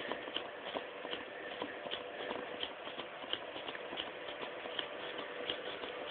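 Faint soft clicking and crinkling of folded paper, about three small clicks a second, as the wings of an origami flapping bird are worked up and down.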